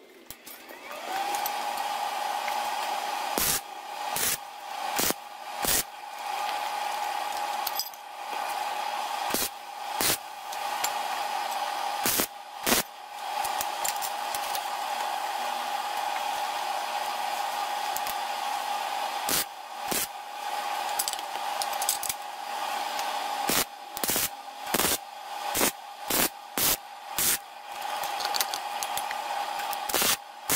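Electric arc welder tack-welding steel L-angle pieces onto a driveshaft tube: a long stretch of steady crackling arc noise, then a run of short sharp arc strikes, one after another, near the end.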